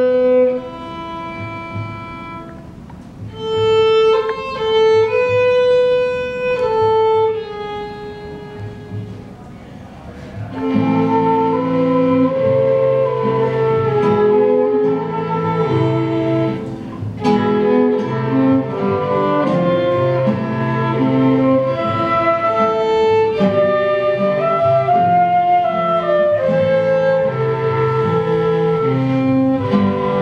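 Small chamber ensemble playing a piece in a minor key. For about the first ten seconds a flute and a violin carry the melody almost alone; then the lower parts, including classical guitar and a clarinet, come in and the sound fills out.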